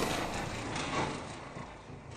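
Fading tail of a loud impact sound effect, dying away steadily with a faint click about a second in.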